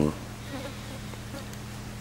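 A steady low buzzing hum, the background noise of the voice recording. A last bit of speech cuts off right at the start.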